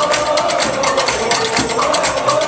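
Live indie rock band playing an instrumental passage: a held note slowly sliding down in pitch over fast, steady drum and cymbal hits.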